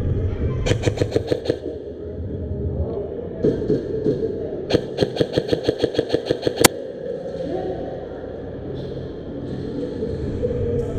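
Airsoft electric guns firing full-auto bursts at about ten shots a second: a short burst about a second in, a faint one around three and a half seconds, then a louder two-second burst that ends in one sharp crack.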